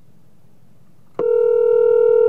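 Telephone ringback tone from an outgoing phone call: a steady electronic tone starts about a second in and holds, signalling that the call is ringing on the other end.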